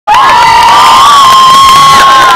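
A spectator's high-pitched cheering scream, held on one pitch for about two seconds and very loud, over crowd noise.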